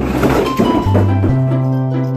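Upbeat background music, with a loud thump and rattling clatter in the first second as a cat jumps down from the top of a bookshelf among stacked boxes.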